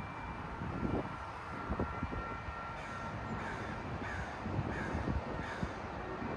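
A bird giving a run of short, harsh calls, each falling in pitch, about half a second apart, starting about three seconds in, over wind noise on the microphone.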